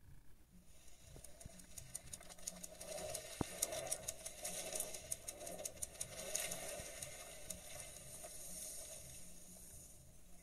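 Faint flurry of rapid, uneven clicks from a television speaker, like comic pages flipping, under the Marvel logo animation. It builds over the first few seconds, is densest in the middle and thins out toward the end, over a low hum.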